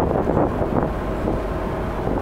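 Wind buffeting the microphone on the open deck of a tanker under way, over a steady low rumble and the wash of water along the hull.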